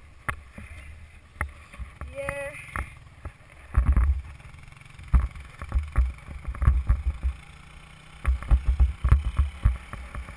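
Wind buffeting a helmet-mounted camera and repeated knocks and bumps of a rider being towed over packed snow behind an ATV, getting rougher from about four seconds in. The ATV's engine runs faintly ahead, and a brief wavering voice sound comes about two seconds in.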